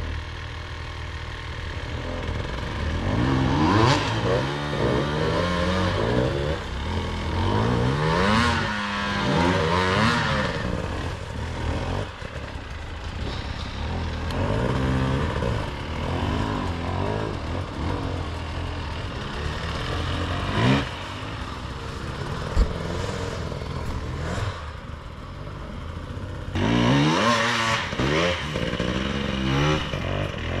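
Two-stroke enduro dirt bike engines: a steady idle, with the revs rising and falling in surges several times, and a couple of sharp knocks in between.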